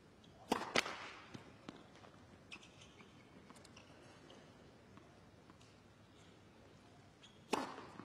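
Tennis ball struck hard by a racket on a serve about half a second in, followed at once by a second sharp ball impact, then a few faint ticks over quiet stadium background. Near the end another serve is struck with the same sharp crack.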